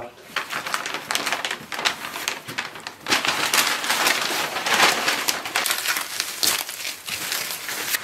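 Paper packing material rustling and crinkling as it is handled and pulled apart, with a dense run of crackles that grows louder about three seconds in.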